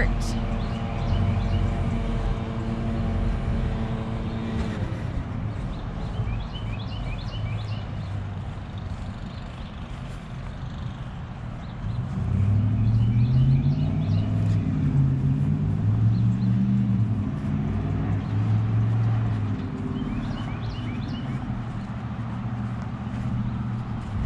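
Engines of passing vehicles on the road alongside: a steady hum that stops about five seconds in, then a louder engine that rises and falls from about twelve to twenty seconds in.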